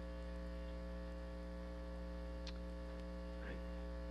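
Steady electrical mains hum with a buzz of many overtones, level and unchanging throughout.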